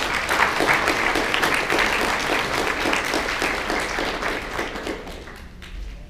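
Audience applauding: dense clapping that thins and dies away near the end.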